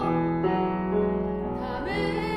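A woman singing slow, long-held notes over piano chords, moving to a new note about half a second in and sliding up into another near the end.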